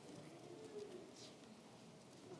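Near silence, with a faint rustle of Bible pages being handled about a second in.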